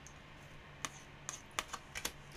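Light clicks and taps of a tarot card being handled and laid down on a tabletop: about five small separate ticks in the second second, over a faint low hum.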